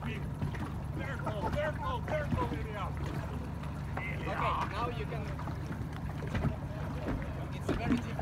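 Indistinct voices calling out over a steady low rumble of a boat under way on open water.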